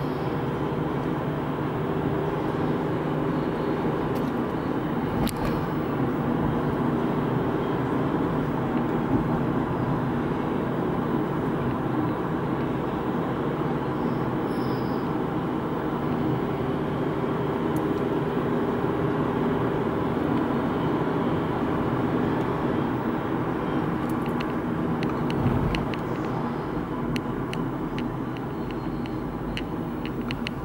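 Steady engine and tyre noise of a car driving on a paved road, heard from inside the cabin, with a constant low drone; a few light ticks come near the end.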